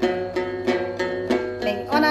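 Đàn tính, the Tày long-necked gourd lute, plucked in a steady rhythm of about three notes a second as accompaniment to hát then singing.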